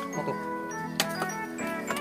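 Background music with sustained notes, with two sharp clicks, one about a second in and one near the end.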